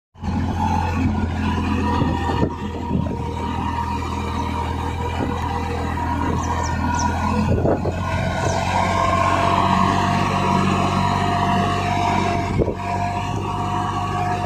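Massey Ferguson 9500 4WD tractor's diesel engine running steadily under load, pulling a reversible plough through the soil, with a few knocks along the way.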